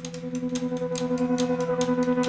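A rock band's song building up live: quick, even strokes on the drum kit's cymbals, about seven a second, over a drone of low held tones. Higher held tones join about halfway through, and the music keeps growing louder.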